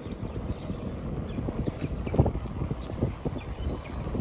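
Wind buffeting the microphone of a moving bicycle, with uneven knocks and rattles as it rolls over cracked asphalt; one louder knock about two seconds in.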